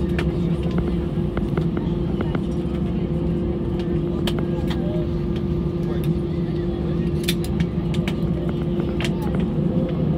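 Airbus A320 taxiing after landing, heard inside the cabin: a steady engine hum at idle with a constant droning tone over low rumble, and scattered sharp clicks.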